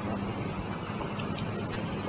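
A boat's engine running at a steady hum under a constant rushing noise.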